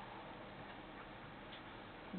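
A faint pause in the broadcast audio: steady low hiss with a couple of faint ticks about a second in and again about half a second later.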